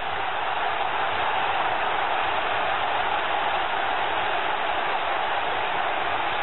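Football stadium crowd cheering steadily after the home side's goal.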